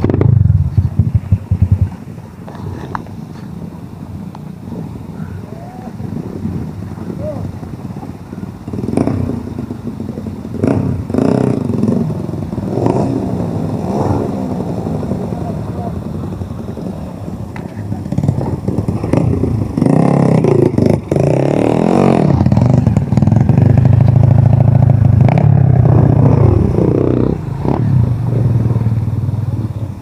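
Dirt bike engines revving, their pitch rising and falling with the throttle, louder in the second half.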